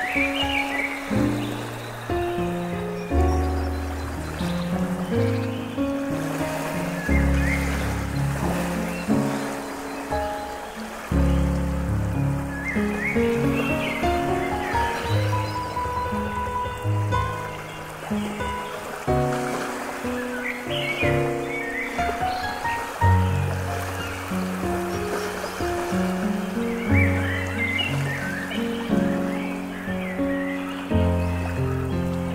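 Slow piano music over a steady running stream, with short bird chirps now and then.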